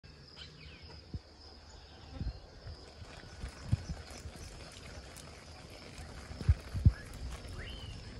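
Quiet outdoor ambience: a faint steady high whine, a few faint bird chirps, and several dull low thumps, the loudest two close together late on.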